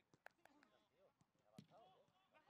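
Faint outdoor training-pitch sound: distant voices and about four short sharp knocks, the loudest about a quarter-second in and about a second and a half in.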